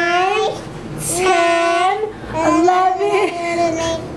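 A high, sing-song voice drawing out words in about three long, gliding notes, as in slow counting aloud.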